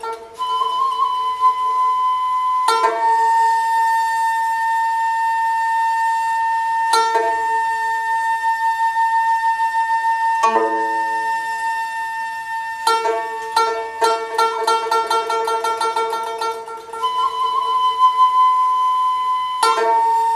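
Nanguan ensemble of xiao end-blown bamboo flute, pipa, erxian fiddle and sanxian playing a slow instrumental passage. The xiao and bowed erxian hold long sustained notes, while the pipa and sanxian add sparse plucked strokes, with a quick run of plucks a little past the middle.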